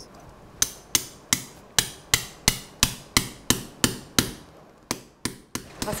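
Surgical mallet tapping on an impactor in a steady run of about a dozen sharp blows, roughly three a second, then a brief pause and three more. The blows drive a knee prosthesis component home into the bone.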